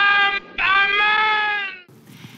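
A man crying out in anguish: two long, high, drawn-out yells, the second held longer and ending just before the two-second mark.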